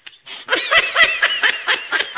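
A person laughing: a run of quick, high-pitched snickering bursts that starts about half a second in and keeps going.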